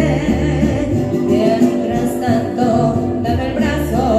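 A young girl singing a mariachi song into a microphone, holding wavering notes, over mariachi accompaniment with low bass notes in a steady rhythm.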